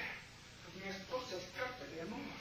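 Quiet, indistinct speech from actors on stage, with no clear words.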